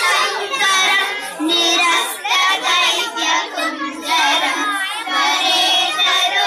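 A group of children singing a Ganesh stotram together in unison.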